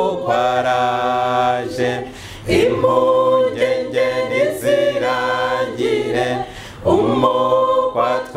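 A small mixed choir of men and women singing a cappella, unaccompanied, in held phrases with two short breaks for breath, about two and a half seconds in and again near seven seconds.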